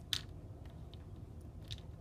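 Faint handling noise of a small plastic toy figure being pressed and moved on a clear plastic lid, with two short crisp clicks, one at the start and a softer one near the end, over low room noise.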